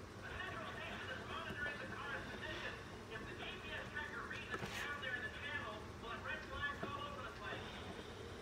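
Indistinct background voices talking steadily, too faint to make out words, with one sharp click about halfway through.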